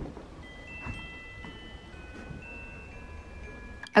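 Soft background music of high, bell-like chime notes, one after another at different pitches, over a low steady background hum.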